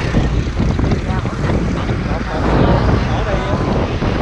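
Motorcycle engines idling, a steady low pulsing rumble, with faint voices over it.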